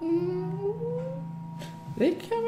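A drawn-out human vocal sound, a wordless 'ooh', that rises steadily in pitch for about a second and then trails off, over a steady low hum.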